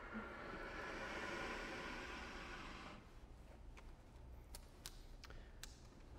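Faint airy hiss from a piano accordion as its bellows are pushed closed through the air valve, swelling and then fading out after about three seconds, followed near the end by a few light clicks as the bellows are fastened.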